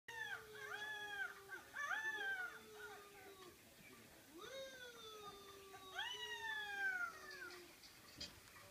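Dogs howling: long drawn-out howls that rise and then slowly sink in pitch, with higher, shorter howls overlapping them in the first few seconds.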